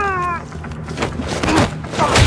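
A short, sharp yell that falls in pitch, from a fighter throwing a blow, followed by a few blows and scuffling.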